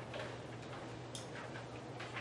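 Paper handouts rustling and clicking a few times at irregular moments over a steady low room hum.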